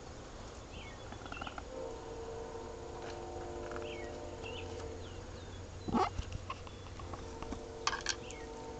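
Outdoor ambience: short high chirping calls every second or so over a steady hum of several held tones, with a short loud sound about six seconds in.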